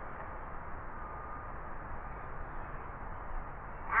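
Steady background noise with no distinct event, heaviest at the low end, with a faint thin tone heard twice.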